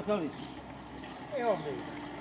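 Indistinct human voices, two short calls with falling pitch, one at the start and one about a second and a half in, over a steady low hum.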